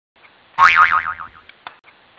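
A cartoon spring "boing" sound effect, a wobbling twang that falls in pitch and dies away within a second, followed by two short clicks.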